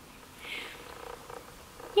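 Quiet pause with a soft breath about half a second in, then faint low murmuring close to the microphone.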